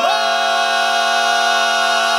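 Barbershop quartet of four men's voices singing a cappella and holding a sustained chord, the voices sliding up into it at the very start.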